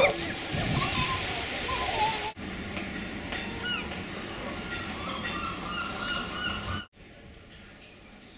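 Outdoor ambience of distant voices, people and children calling, over a steady wash of background noise. It cuts off suddenly about two seconds in to quieter outdoor ambience with a few short chirps, then drops to fainter ambience near the end.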